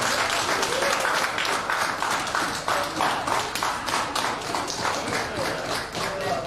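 A church congregation applauding: many hands clapping densely and continuously, with voices calling out over the clapping.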